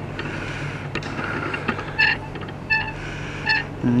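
Diesel engine of Class 43 HST power car 43251 running steadily as its train moves past, a low even hum. Three short high-pitched squeals come about two, two and three-quarter and three and a half seconds in.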